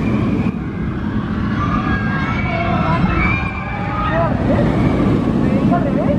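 Steady low rumble of a steel flying-coaster train running on its track, with people's voices and gliding high-pitched calls over it.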